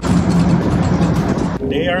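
In-cab sound of a Gen 1 Ford Raptor on SVC mid-travel bypass shocks being driven: a loud rush of road and suspension noise over a low steady engine hum. It cuts off about a second and a half in.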